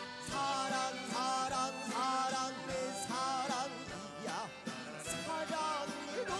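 Live fusion gugak band music: a sustained, wavering melody line with vibrato and sliding notes over the band's accompaniment.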